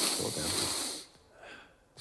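A man snorting a line hard through the nose: one long, hissing snort that ends about a second in, followed by a brief faint sniff.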